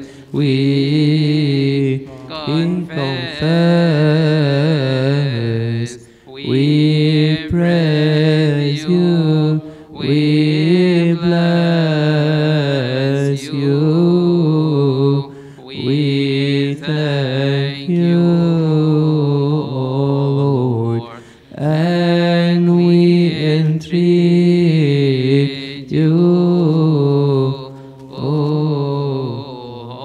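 Coptic Orthodox liturgical hymn chanted by a male voice in long, wavering melismatic phrases, broken by short pauses every few seconds.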